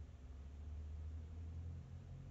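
Quiet room tone: a faint, steady low hum with no distinct events.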